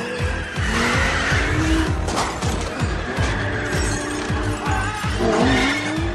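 Film action soundtrack: a sports car engine revving in rising sweeps, about a second in and again near the end, with tyre squeal, over a music score.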